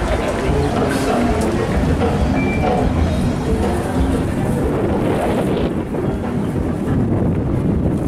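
Wind buffeting the microphone in a steady low rumble, with the voices of people walking by.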